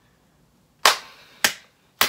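One person clapping her hands three times, each a sharp clap about half a second apart.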